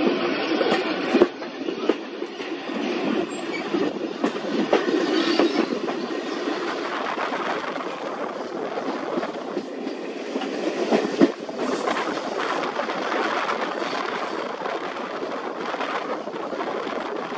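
Railway coach running along the track, heard from the carriage window: wheels clicking over rail joints over a steady rumble, with sharp knocks about a second in and again about eleven seconds in, and a brief high whine soon after the second knock.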